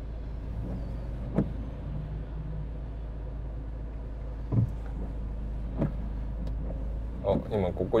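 Steady low rumble of a car's cabin while it sits in traffic. Three short sharp clicks sound about a second and a half, four and a half and six seconds in.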